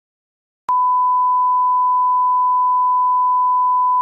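Colour-bar line-up test tone: a single steady pure beep that starts abruptly with a click about a second in and holds unchanged.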